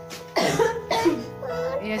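A sudden cough about a third of a second in, with a shorter second one near one second, over background music; talking resumes near the end.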